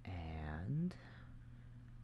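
A man's drawn-out 'uhh', held level and then rising in pitch, lasting just under a second, followed by a single mouse click. A steady low electrical hum runs underneath.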